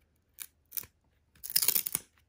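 Baseball trading cards being handled in the hands: two light ticks, then about half a second of quick dry scraping near the end as a card is slid off the stack.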